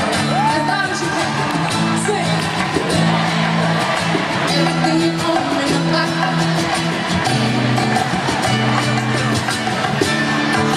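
Live pop concert music over an arena sound system, recorded from among the audience: an amplified band with held bass notes changing about once a second, and singing.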